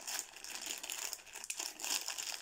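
Foil blind bag of a Funko Mystery Mini crinkling irregularly as it is gripped at the top and pulled open by hand.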